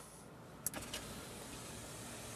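A single click about two-thirds of a second in as the roof button is pressed, then the faint steady hum of the Smart Roadster's electric soft-top starting to slide back.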